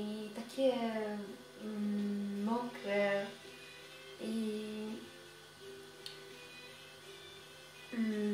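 A woman's voice humming a slow tune quietly, in a few held notes that slide into place, fading out in the second half.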